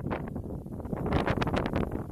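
Strong wind buffeting the microphone: an irregular, gusty rumble that swells a little about a second in.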